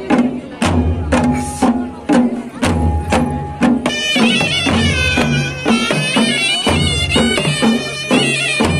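Himachali folk band playing: dhol and kettle drums beat a steady rhythm, with a deep stroke about every two seconds under quicker beats. About halfway through, a reedy wind instrument, a shehnai, comes in with a wavering, ornamented melody over the drums.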